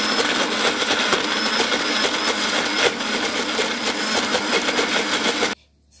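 Small personal blender running at full speed, its blades chopping hard chunks of lemongrass, onion, ginger and garlic in oil into a paste, with pieces clattering against the jar. The motor cuts off abruptly near the end.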